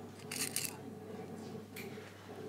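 Brief scratchy rustle of fabric being handled as a pocket facing is pinned onto a blazer panel, with a second, fainter rustle near the end, over a low steady hum.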